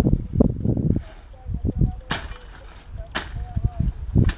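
Voices talking, with two sharp knocks about two and three seconds in.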